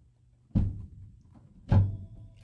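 Two dull thumps about a second apart, the second slightly louder.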